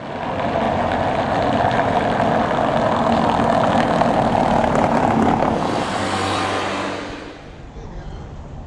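A road vehicle passing close on a cobbled street: a loud, rough tyre-and-engine rumble that fades away about seven seconds in.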